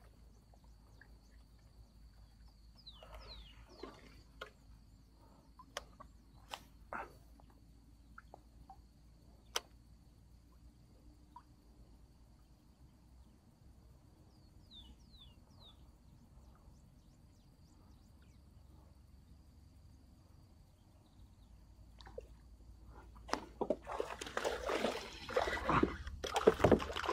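Quiet marsh with scattered faint clicks and a few short bird chirps, then near the end loud surface splashing as a traíra strikes a frog lure and thrashes on the line.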